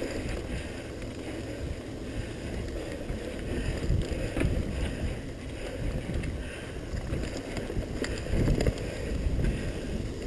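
Mountain bike ridden fast down a dirt singletrack: continuous low rumble of tyres over the trail and wind on the microphone, with a couple of light clicks or rattles from the bike.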